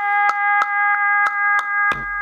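Electronic music: a held chord of several high steady tones, pulsed by a sharp click about three times a second.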